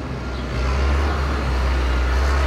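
A John Deere 310SL backhoe loader's diesel engine running as the machine drives past close by, a deep steady engine sound that grows louder about half a second in.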